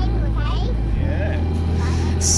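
A song playing as background music: a singing voice over sustained bass notes that shift to a new note about halfway through.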